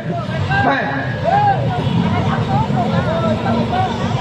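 People talking, with a man calling out "hey!" about a second in, over the steady low hum of street traffic.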